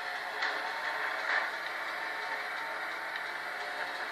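Racing-game car engine and tyre sounds playing through the Moto X Play smartphone's small speaker: a steady mid-range drone with little bass.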